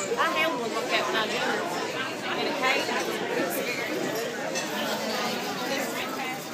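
Indistinct chatter of several people talking at once in a busy restaurant dining room.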